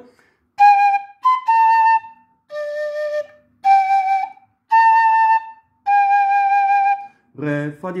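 Yamaha plastic fife playing a slow phrase of seven separate notes, G, B, A, low D, F-sharp, A, G, with short breaks between them. The B is short, and the last G is held longest. This is the closing phrase of the tune being taught.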